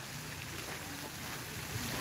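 Steady outdoor rushing noise: splashing water from a garden fountain mixed with wind on the microphone.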